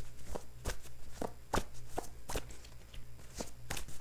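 A deck of oracle cards being shuffled by hand: a string of short, irregular card slaps and clicks, about three a second.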